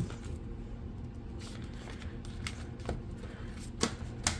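Plastic zipper envelopes being turned in a ring-binder cash wallet and paper bills being handled: soft rustling with a few light clicks. The sharpest click comes just before the end.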